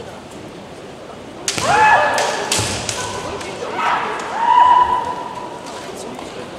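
A rapid exchange of bamboo shinai strikes and clacks begins about a second and a half in, with the women fencers' high-pitched kiai shouts over it. A second, longer kiai is held near the end.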